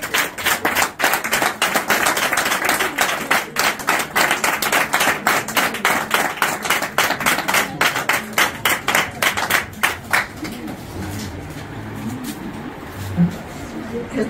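A group of people clapping their hands in a brisk, even rhythm, stopping about ten seconds in, followed by low murmuring voices.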